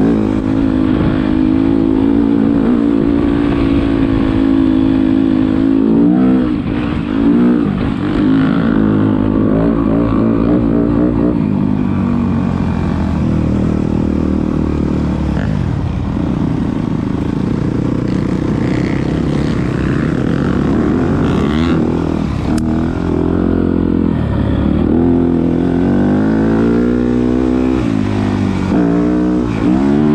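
Yamaha dirt bike engine running under way, the pitch rising and falling several times as the throttle is opened and closed.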